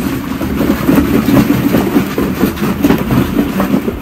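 Hollow plastic ball-pit balls rattling and clattering against each other as they are stirred up and tossed, a dense run of quick clicks.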